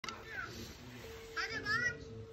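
A faint, high-pitched voice, like a child's, speaks briefly twice, the second time louder. About halfway in, a steady electronic tone starts and holds.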